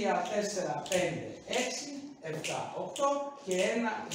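A man's voice talking in short phrases, with light taps of shoes on the floor from the dancing.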